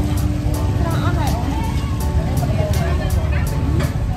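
Busy open-air market sound: overlapping voices over a steady low rumble, with faint regular ticking about three times a second.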